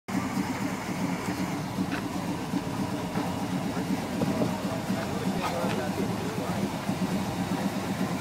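A 1995 Chevrolet Impala SS's 5.7-litre LT1 V8 idling steadily.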